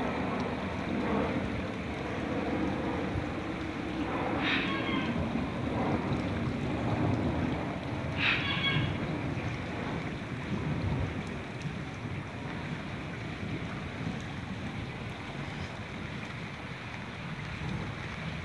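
Fast-flowing flash-flood water rushing through a residential street: a steady wash of noise, with wind buffeting the microphone. Two brief distant calls are heard, about four and eight seconds in.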